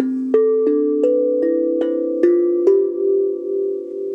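Steel tank drum, cut from a gas cylinder with rectangular tongues, struck with a mallet: about eight notes of its C major scale in quick succession over the first three seconds. Each note rings on and overlaps the next, and the last is left ringing out.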